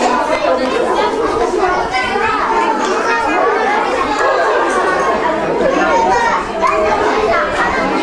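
Many children talking and shouting at once while they play, a loud, unbroken babble of overlapping voices.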